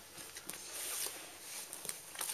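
Paper comic magazines being shifted by hand on a carpet: faint rustling of glossy pages with a couple of soft taps, one about half a second in and one near the end.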